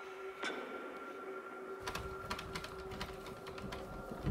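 Door handle and latch of a stuck interior door being worked, clicking and rattling repeatedly from about two seconds in, with a low rumble of the door being pushed and pulled.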